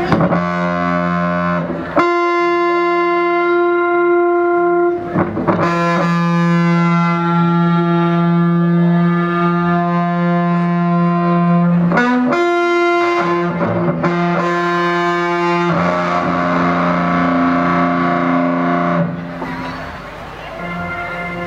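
Distorted electric guitar playing long sustained lead notes, one held for about ten seconds, with brief breaks between notes and a change of note near the end.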